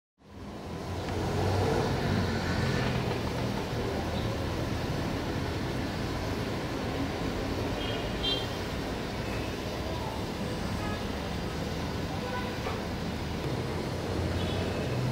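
Steady outdoor ambience of distant road traffic, a low rumble that fades in over the first second, with a brief high chirp about eight seconds in.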